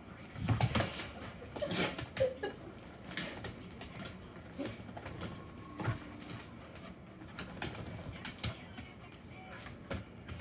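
Two sheepadoodles playing rough together: scattered clicks and scuffles of claws and paws on a rug and hardwood floor.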